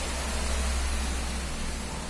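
Steady background hiss with a low hum underneath: room tone.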